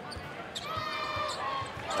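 A basketball being dribbled on a hardwood court, a run of repeated bounces over arena crowd noise.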